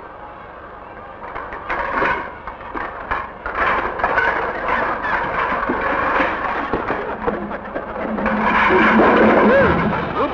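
Audience laughter that swells after a quiet opening second and is loudest near the end, with a few sharp clattering knocks of wooden baseball bats being knocked over.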